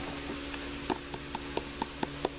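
Steady hum and rush of a shop fan, with about five light, sharp clicks in quick succession in the second half.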